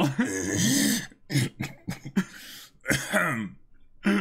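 Voices in short bursts: the anime's Japanese dialogue under its subtitles, mixed with the reacting men's brief laughter and breathy throat sounds.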